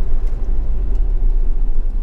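Camper van driving along a paved road, its engine and tyre noise a steady low rumble heard from inside the cab.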